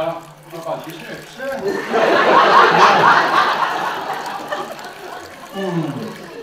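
Theatre audience laughing, a burst that swells about two seconds in and dies away over the next couple of seconds, between short bits of the actors' speech.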